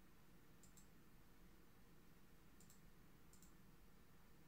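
Three faint computer mouse clicks, each a quick double tick of press and release, about a second in and twice close together near the end, over near-silent room tone.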